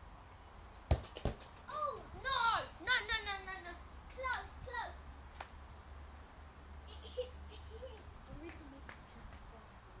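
Two sharp knocks about a second in, then a child's high-pitched shouts and squeals that rise and fall in pitch for about three seconds.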